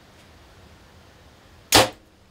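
A Sirius Archery Gemini compound bow firing: one sharp, loud snap of the string and limbs as the arrow is released near the end, after a quiet hold at full draw.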